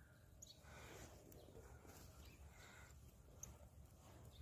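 Near silence: faint outdoor ambience with a few faint, short high chirps.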